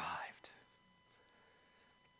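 A man's spoken word trailing off at the start, a single short click about half a second in, then a pause of near-silent room tone with faint steady high tones.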